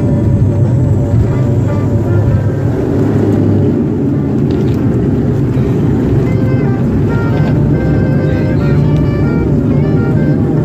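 Steady, loud rumble inside a plane's cabin as its main landing gear rolls at speed along a wet runway, with music playing over it.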